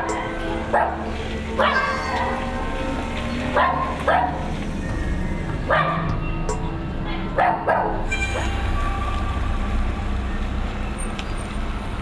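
A dog barking repeatedly, single barks a second or two apart, over the steady low rumble of idling vehicle engines. The barking stops about eight seconds in, leaving only the engine rumble.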